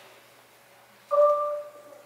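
Concert marimba struck once about a second in, two notes sounding together, ringing briefly and fading, after a hushed opening second.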